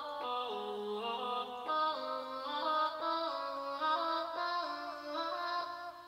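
Output Exhale vocal engine playing synthetic, processed vocal chords: sustained stacked voice-like notes that step to new chords every half second to a second, stopping just before the end.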